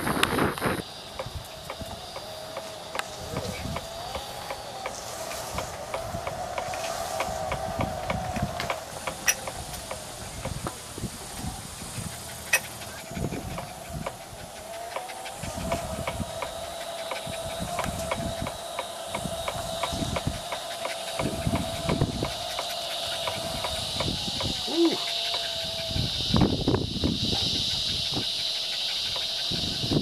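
Electric wheelchair drive motor whining steadily as the chair rolls along a path, its pitch wavering slightly with speed, with small knocks and rattles from the ride. A steady high-pitched buzz grows in the second half.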